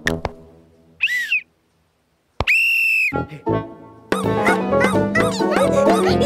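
A short squeaky chirp, a pause, then a steady whistle blast of under a second. Bouncy cartoon music starts about four seconds in.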